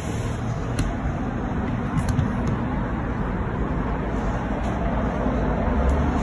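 Steady low rumble of distant city road traffic, with a couple of faint clicks.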